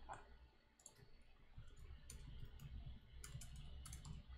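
Faint, scattered clicks of a computer keyboard and mouse, about eight of them irregularly spaced, as a test case is selected, copied and pasted.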